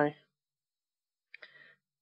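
A woman's voice trails off at the very start. Then there is dead silence, broken once by a faint, brief sound about a second and a half in.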